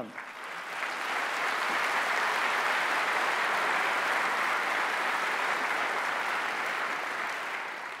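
Large audience applauding, rising quickly to a steady level and easing slightly near the end.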